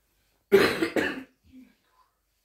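A person coughing twice in quick succession, loudly, about half a second in.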